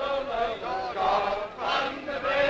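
Several men's voices chanting together in unison, in short held phrases.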